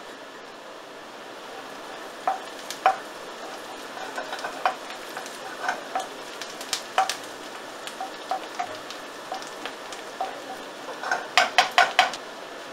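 Chopped onion and garlic sizzling in oil in a frying pan while a wooden spoon stirs them, knocking against the pan. The knocks come irregularly from about two seconds in, with a quick run of louder knocks near the end.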